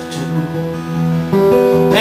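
Acoustic guitars strumming a slow country accompaniment in a short break between sung lines, with held notes that change pitch about a second in.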